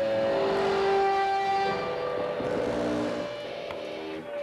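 Live rock band playing a droning instrumental passage of sustained electric guitar and keyboard notes, the held pitches changing every second or so. It grows somewhat quieter about three seconds in.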